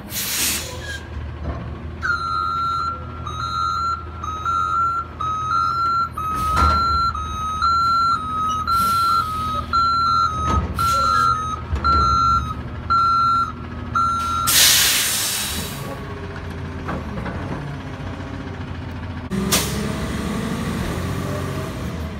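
Republic Services front-loader garbage truck's diesel engine running while its reverse alarm beeps steadily, a little over once a second, for about twelve seconds as it backs up. The beeping stops and a loud air-brake hiss follows, with another hiss near the end.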